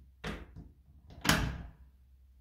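A door being handled: a light knock about a quarter second in, then a louder thud about a second later that dies away quickly, as the door is shut.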